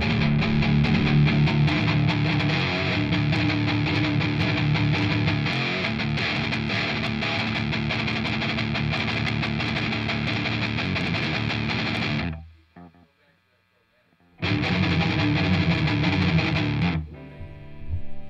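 Explorer-style electric guitar played through an amp, a fast picked riff with many rapid strokes. It cuts off suddenly about twelve seconds in, and after about two seconds of near silence a short burst of the riff returns before dying down near the end.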